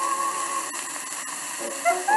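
Old shellac 78 rpm record of a slow-fox playing: a held chord with vibrato fades out about half a second in, leaving the disc's surface hiss and a couple of clicks, and new short notes of the melody start near the end.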